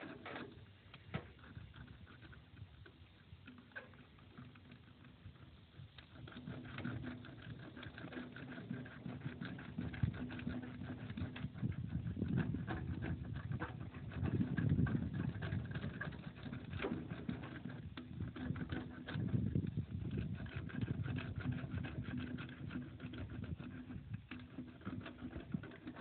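Patch stitcher rolled back and forth over a rubber tube-repair patch on a tractor inner tube, pressing it down to bond: a run of small clicks and crackles with rubbing that grows louder a few seconds in and swells several times.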